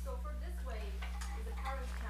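Faint, distant speech of an audience member asking a question away from the microphone, over a steady low hum.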